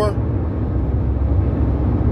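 Steady road and engine noise inside a moving car's cabin: a constant low rumble with a light hiss above it.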